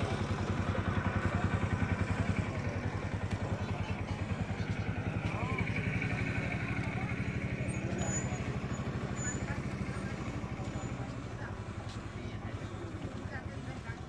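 An engine running steadily nearby with a rapid, pulsing low thrum that slowly fades toward the end.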